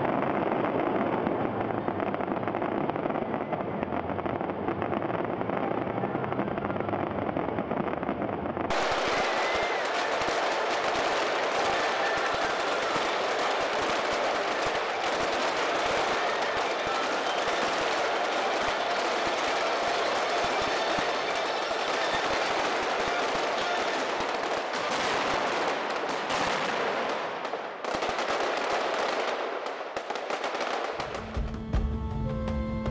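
Fireworks barrage: a dense, continuous rapid crackle of shell bursts and reports, like machine-gun fire. About nine seconds in the sound changes abruptly to a brighter, sharper crackle.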